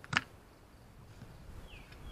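A single sharp click just after the start as a bicycle inner tube is worked by hand around the steel rim of a trailer wheel, followed by quiet handling noise and a short falling chirp near the end.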